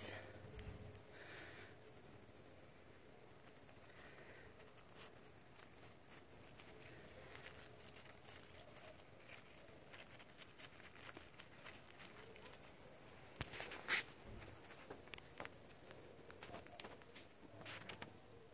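Faint scattered rustles and crinkles of a paper tea filter and salad greens being handled, with one brief louder crinkle about three-quarters of the way through.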